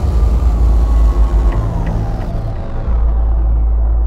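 Cinematic trailer sound design: a heavy, deep rumble with music held over it, and a few faint ticks about halfway through.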